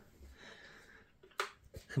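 A few short, soft knocks about one and a half seconds in, as a glass bathroom scale is tapped with a foot to switch it back on.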